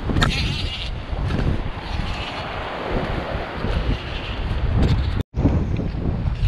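Wind rumbling on the microphone over the wash of surf on a rock shelf, with a brief hiss in the first second; the sound drops out for an instant near the end.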